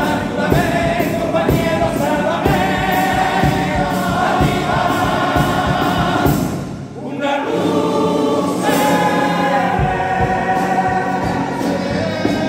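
Comparsa's male chorus singing in harmony over Spanish guitars and a steady beat. The voices stop briefly about seven seconds in, then come back in.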